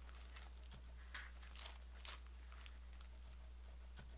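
Faint crinkling of a clear plastic sleeve of planner stickers turned in the hands, a few light rustles in the first half, over a steady low hum.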